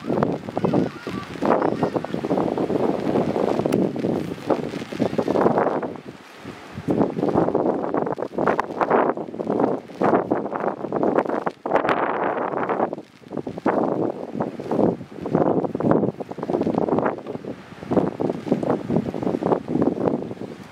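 Leafy branches and grass rustling in short, uneven surges, mixed with wind noise.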